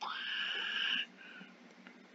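A person's breath drawn in sharply, a noisy intake lasting about a second, then near quiet.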